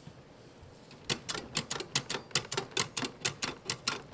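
Cream-filling machine clicking rapidly, about six or seven sharp clicks a second, as it pumps whipped cream through its nozzle into a bun; the clicking starts about a second in.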